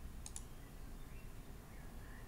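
Quiet room tone with a low steady hum, and two faint short clicks close together near the start.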